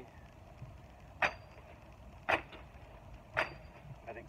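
Gerber Gator kukri machete chopping into shrub branches: three sharp chops about a second apart.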